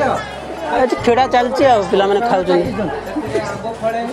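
Several men talking over one another: casual group chatter.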